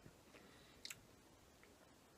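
Near silence: room tone, with one faint short click just before a second in.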